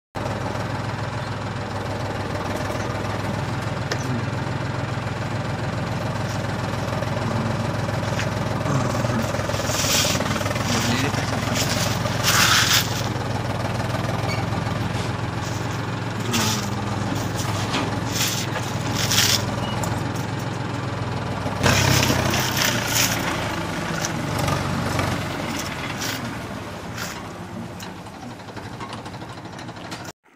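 Steady low engine drone, the running sound of a miniature toy tractor pulling a loaded trolley through mud, with a few short, louder noisy bursts midway. It fades over the last few seconds.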